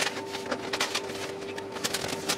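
A few light clicks and creaks of a hand shifting on a large expanded-polystyrene (styrofoam) box lid, over a steady low electrical hum.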